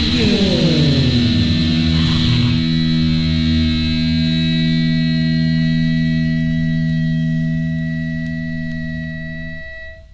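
Punk rock song ending: the band's rhythm stops and a downward pitch slide over the first couple of seconds gives way to a held guitar and bass chord ringing out, which fades and cuts off just before the end.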